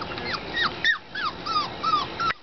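Weimaraner puppies whimpering: a quick run of short, high squeals, each falling in pitch, several a second.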